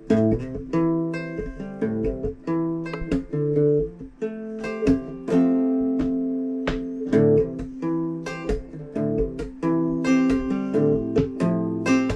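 Acoustic guitar played solo, a picked and strummed chord pattern with ringing notes, starting suddenly after a pause.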